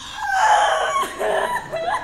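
A young woman wailing in loud, theatrical sobs, her voice high and wavering, with a brief break near the middle.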